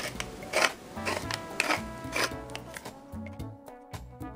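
A pepper mill grinding in about four short twists over background music. Near the end the grinding stops and only the music goes on.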